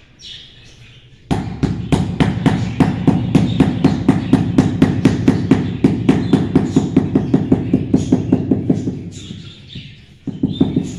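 Rubber mallet tapping a marble floor tile rapidly and evenly, about five strikes a second, to bed it into wet mortar. The tapping starts about a second in and eases off near the end.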